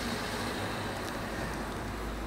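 Steady room tone: an even hiss with a low hum underneath, and no distinct sounds.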